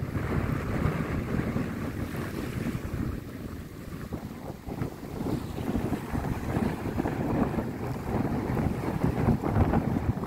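Strong sea wind buffeting the microphone, rising and falling in gusts, over choppy waves washing around a small open wooden boat.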